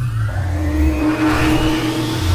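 Studio logo sound effect built like a revving engine: a rising whine over a deep rumble, growing louder toward the end.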